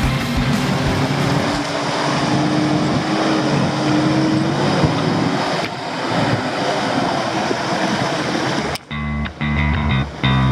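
Off-road 4x4 engine running under load amid heavy rumbling road and tyre noise, its pitch climbing slowly for a couple of seconds. Near the end it cuts off abruptly and rock music with guitar and bass takes over.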